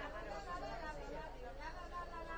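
Faint background chatter: several people talking at a distance, with no single voice standing out.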